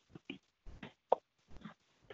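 Faint, scattered clicks and short pops on a teleconference phone line, with one sharper pop about a second in.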